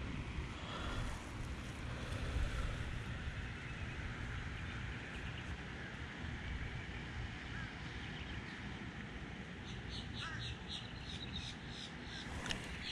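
Wind buffeting the microphone, with faint bird calls in the background and a quick run of faint high ticks near the end.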